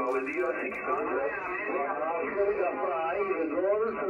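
A distant station's voice received over HF single-sideband and heard from the transceiver's speaker. It is thin and band-limited, as SSB radio audio is, and is calling or giving a contest exchange.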